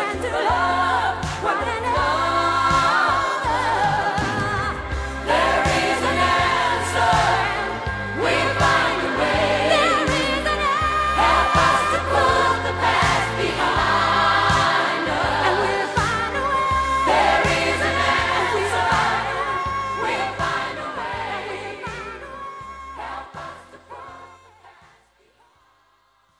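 Pop song recording: singing over a full band with a steady bass line, fading out in the last couple of seconds.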